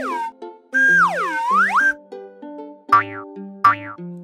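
Cartoon sound effects over light children's background music made of short plucked-sounding notes. About a second in comes one swooping glide whose pitch falls and rises back over about a second, and near the end there are two short quick sweeps.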